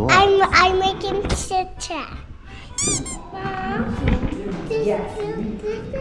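A young child talking excitedly in high-pitched bursts of speech.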